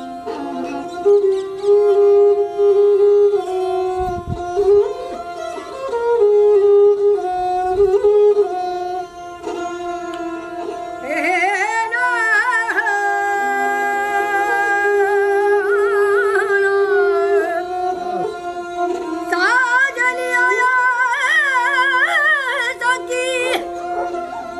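Rajasthani folk music: a bowed string instrument plays a sliding melody over a steady drone, with a few low hand-drum strokes in the first half. A high, ornamented singing voice comes in about eleven seconds in and again near the end.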